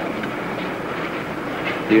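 Steady background noise, a low even rush with no clear events, then a man's voice starts right at the end.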